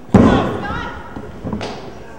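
A loud, heavy thud of a body hitting the wrestling ring, with spectators shouting right after it; a sharper smack follows about a second and a half in.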